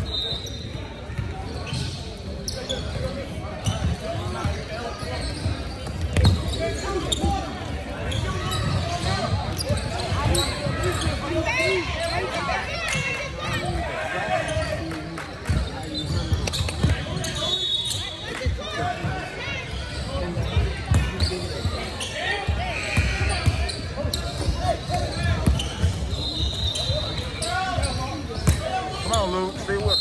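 Basketball game sounds in a large echoing gym: a basketball bouncing on the hardwood court, with indistinct voices and shouts from players and onlookers throughout and a few short high squeaks.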